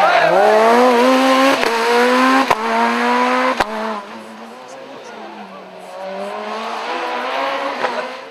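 Peugeot 207 rally car accelerating hard out of a hairpin, its engine climbing in pitch, with three sharp cracks in the first four seconds. The sound then drops away, and another rally car's engine grows louder near the end.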